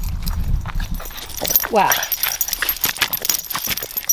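Irregular crunching and clicking of footsteps on a gravel road, with the metal clips of dog leashes and a collar tag jingling lightly in the second half as a small dog tugs at the leashes.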